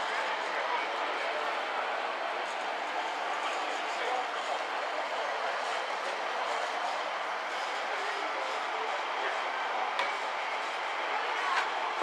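Steady outdoor background noise with indistinct distant voices and no distinct mechanical events.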